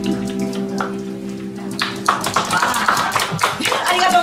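The band's last chord rings out on plucked string instruments and bass and dies away. About two seconds in, the audience breaks into clapping.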